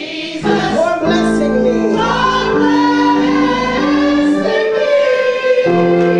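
Church gospel choir singing through microphones, over held accompaniment chords that change about once a second.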